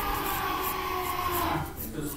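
Sound from a gaming video playing in the background: a long, drawn-out held tone that slowly falls in pitch and fades out near the end.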